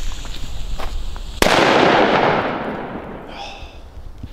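A Funke Super Böller 2 firecracker goes off about a second and a half in with one sharp, loud bang. Its echo rolls on and fades away over the next two seconds.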